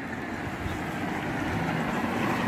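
Steady outdoor background noise, a low rumble with a hiss above it, growing slowly louder.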